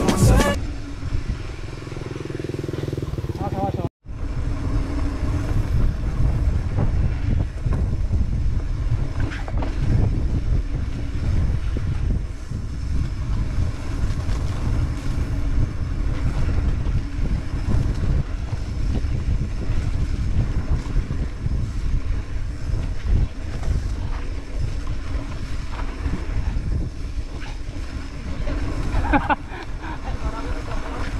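Rumbling wind buffeting the camera microphone, together with the clatter of a mountain bike rolling fast down a bumpy dirt singletrack. It is uneven and continuous, broken by a brief dropout about four seconds in.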